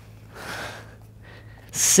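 A person breathing hard while exercising: a sharp breath out about half a second in, then a louder breath near the end that runs into the spoken count "six".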